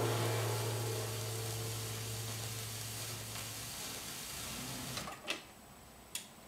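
The record's final held note fades out over the surface hiss of the disc. About five seconds in come a couple of clicks as the turntable's stylus lifts off the record, and the hiss stops.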